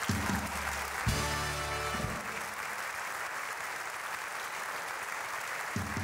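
Audience applauding steadily in a hall, while a band plays short chords: a carnival Tusch marking the punchline. One chord comes right at the start, a longer one about a second in, and another near the end.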